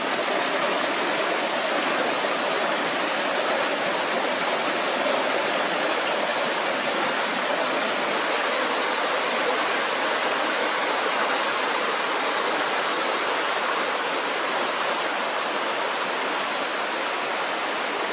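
River water rushing over boulders in shallow rapids: a steady, unbroken rush of flowing water.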